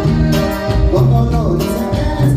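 Live norteño band playing a cumbia, with sustained melody notes over a steady bass beat and a singing voice.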